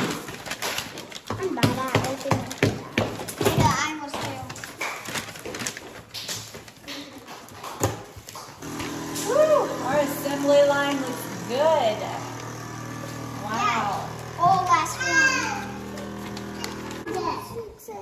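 Children's voices and crinkling of paper bags. From about halfway, a vacuum sealer's pump runs with a steady hum under high children's calls, drawing the air out of a bag, and stops shortly before the end.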